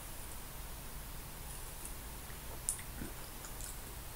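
Faint mouth sounds of someone drinking from a can and tasting the sip: a few soft clicks and smacks, the clearest about two and a half seconds in, over a low steady hum.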